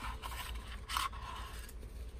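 Small cardstock ephemera die-cuts rustling and sliding over each other and across a tabletop as they are tipped out of a bowl and spread by hand, with a brief louder scrape about a second in.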